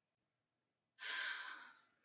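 A narrator's long, breathy sigh starting about a second in and fading away over about a second.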